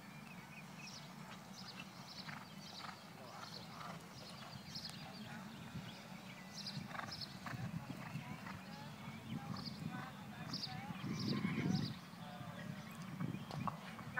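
Hoofbeats of a horse galloping the barrel pattern on soft arena dirt, running through with a low rumbling texture. There is a louder low swell about eleven seconds in.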